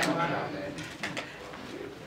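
A pause in a sermon: quiet church room sound with a faint, low voice murmur. A sharp click comes right at the start.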